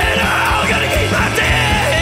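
Psych garage rock recording playing: a full band with drums and distorted guitars, loud and dense.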